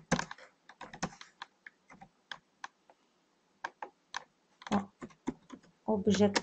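Typing on a computer keyboard: irregular runs of keystroke clicks, with a pause of about a second midway.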